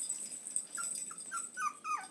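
Three-and-a-half-week-old puppies whimpering: short, high squeaks that fall in pitch, starting a little way in and coming quicker toward the end.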